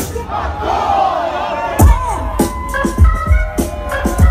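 Concert crowd shouting together while the hip-hop beat drops out. The bass-heavy beat comes back in about two seconds in.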